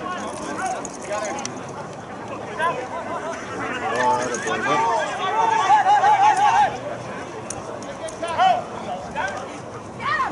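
Rugby players and sideline spectators shouting and calling over an open field, the words not clear. A long drawn-out wavering shout stands out just past the middle.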